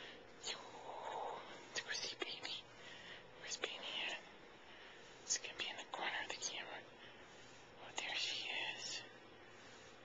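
A person whispering in several short phrases with pauses between them, with a few small clicks.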